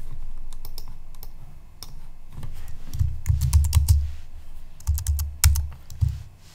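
Typing on a computer keyboard: keys clicking in short, irregular runs with pauses between, including presses of the backspace key.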